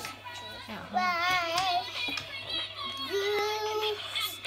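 A toddler singing a few drawn-out notes, with a high wavering note about a second in and a lower, steady held note near the end.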